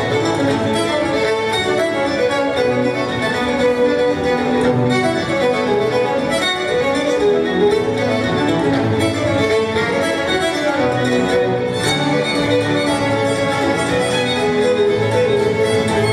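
Solo fiddle bowing a fast tune in quick runs of notes, over piano accompaniment.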